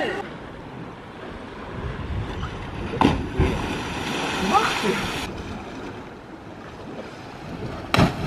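A cliff diver hitting the sea from high up: a sudden splash about three seconds in, followed by about two seconds of spray hiss, with voices shouting around it. Wind on the microphone and the sea wash run underneath.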